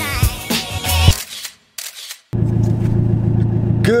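Intro music ends, followed by a brief gap with a few camera-shutter clicks. About two seconds in, the engine of a Nissan 180SX starts a steady low hum, heard from inside the cabin.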